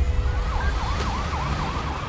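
Emergency vehicle siren in a rapid yelp, its pitch rising and falling several times a second, starting about half a second in over a low rumble.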